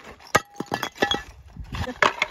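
Old fired-clay roof tiles clinking and clattering against each other as they are tossed onto a pile of broken tiles: a few sharp clinks with a brief ring, the first about a third of a second in and a quick cluster around one second.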